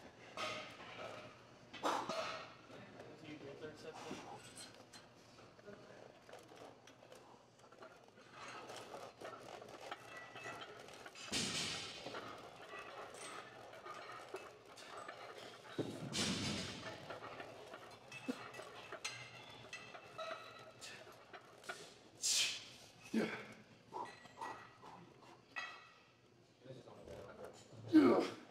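Weight-room ambience: other gym-goers talking indistinctly in the background, with a few short bursts of noise and light knocks during an incline barbell bench press set.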